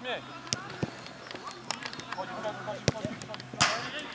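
A football being kicked on artificial turf, with several sharp knocks spread through and a short, louder noisy burst near the end, among players' shouts.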